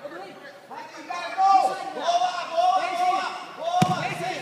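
Several voices shouting across a large hall, with drawn-out calls that the recogniser could not make out as words. A single sharp clap or slap sounds near the end.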